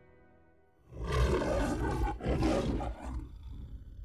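The MGM lion's roar: two long roars starting about a second in, the second a little shorter, then dying away near the end, with music beneath.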